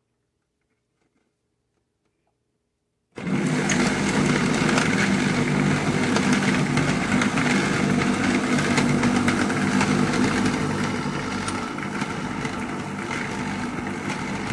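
About three seconds of near silence, then a car buffer's electric motor comes in suddenly and runs steadily, driving pool balls round a towel-lined plastic bucket, with many light clicks as the balls knock against each other.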